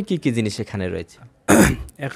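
A man's voice speaking briefly, then a short, loud throat-clear about one and a half seconds in.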